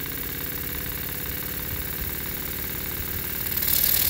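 Stuart S50 model steam engine running fast with rapid, even exhaust beats, its exhaust driving a small model turbine. Near the end the level rises and a loud hiss of escaping exhaust comes in as it is opened up.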